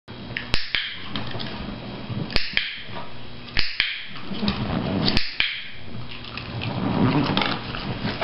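A cattle dog on an inflatable peanut ball eating treats from a hand, with chewing and shuffling sounds. A few sharp clicks come a second or two apart.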